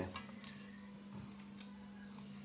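Faint small clicks and ticks as the tape end is fed into the slot of a 10-inch aluminium reel's hub by hand, over a steady low hum.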